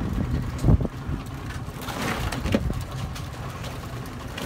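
Wind rumbling on the microphone aboard a small boat, uneven and low, with a brief rustling scrape about two seconds in.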